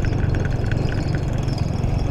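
Motorcycle engine running steadily, heard from on the moving bike along a stony dirt track, with a faint rattle over the even rumble.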